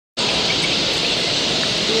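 Steady din of a large bird-show hall full of caged finches: a dense, unbroken haze of many small birds chirping, with people talking in the background.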